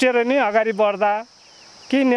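A steady, high-pitched insect chorus, like crickets chirring, runs throughout under a man's speech, which stops after about a second and resumes near the end.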